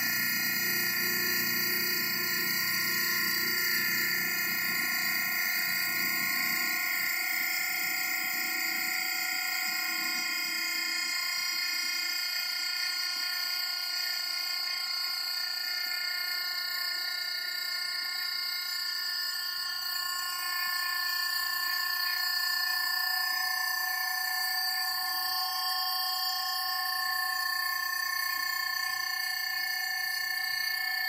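Vertical hydraulic cardboard baler's electric motor and hydraulic pump running with a steady whine of several tones as the platen moves down into the bale chamber. A low rumble under the whine fades out over the first ten seconds or so.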